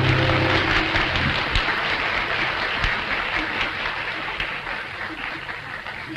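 Audience applauding at the end of a vintage recording, the last held musical note dying away about half a second in; the clapping fades out gradually.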